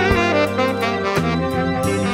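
A slow blues played by a band: drums, bass and sustained lead lines fill a short instrumental gap between sung lines.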